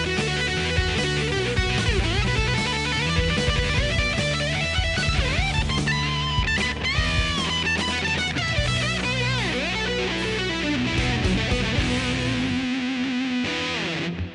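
Electric guitar, an Epiphone, played through a ProCo RAT distortion pedal: a heavy distorted riff with string bends. Near the end the low notes drop out, leaving a held note that cuts off sharply.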